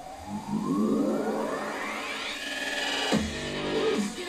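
Electronic dubstep track played through the Vankyo V630W projector's small built-in speaker at half volume, picked up from about three feet away. A rising synth sweep builds for about three seconds, then a heavy bass hit drops in.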